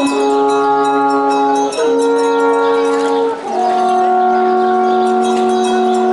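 Two alphorns playing together in harmony, long held notes that move to a new chord twice, about every second and a half, the last chord held on.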